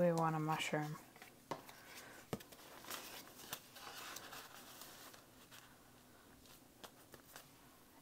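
A short wordless vocal sound, then soft rustling and light clicks of paper postcards and cards being handled and slid into a journal's pages, with one sharper tap a couple of seconds in.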